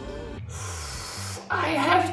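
Music breaks off about half a second in, followed by a breathy gasp from a woman, then her voice exclaiming from about a second and a half in.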